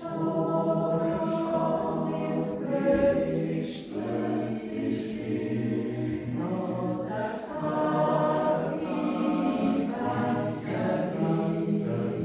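Swiss mixed yodel choir of men and women singing a cappella in close harmony, sustained chords moving about once a second over low bass voices.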